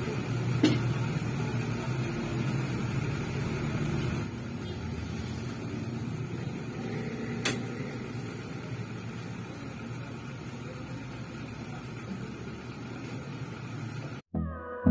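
Steady low hum in a small kitchen during cooking, with two sharp clinks of metal cookware, one about a second in and one about halfway through. The hum drops a little about four seconds in.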